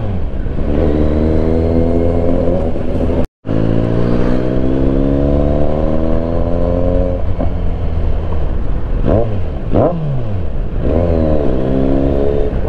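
Kawasaki Z900's inline-four engine heard from the rider's seat, pulling up through the gears, its pitch climbing steadily in long sweeps. The sound cuts out completely for a moment about three seconds in. Around ten seconds in the revs drop and rise quickly a couple of times before climbing again near the end.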